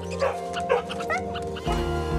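A dog gives a few short barks and yips over music, which picks up a heavier beat near the end.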